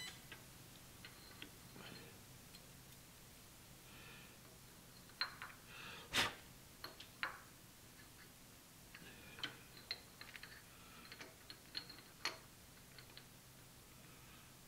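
Scattered light metallic clicks and knocks as a ductile iron nut is handled in a milling-machine vise: lifted off a steel parallel, turned a quarter turn and set back down. The sharpest knock comes about halfway through, with a run of small clicks near the end, over a faint steady hum.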